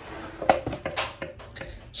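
Faint handling noise with a few light taps, the clearest about half a second and a second in.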